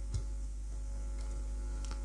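Steady low electrical mains hum with faint room tone, and one faint click shortly after the start.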